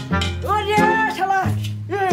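Background music: plucked guitar-like notes over a bass line that changes note every half second or so, with a bending voice-like sound in the middle.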